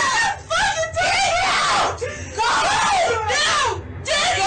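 People wailing and crying out in distress, a woman sobbing among them: loud, wavering cries in three long stretches with short breaks between.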